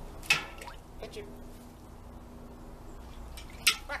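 Newfoundland dog plunging its muzzle into a metal bucket of water to fetch a watch from the bottom, with one sharp splash near the end.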